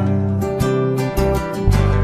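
Recorded Brazilian popular music: an acoustic guitar strums chords over steady bass notes in an instrumental stretch between sung lines, with the bass changing note near the end.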